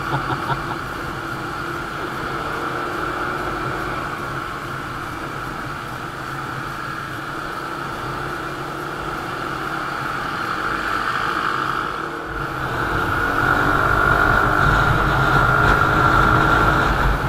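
Motorcycle engine running at a steady cruise with wind rushing over the camera microphone while riding. A little after halfway it becomes louder, with more low wind rumble.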